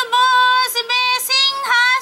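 A woman singing unaccompanied in a high voice, holding long, steady notes with brief breaks: a Bengali patua scroll song (pater gaan) telling the Ramayana.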